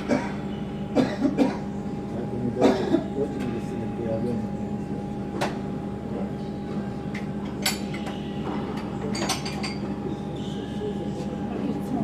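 Tennis ball struck by racquets and bouncing on an indoor hard court during a rally: sharp pops every second or two, over a steady mechanical hum in the hall.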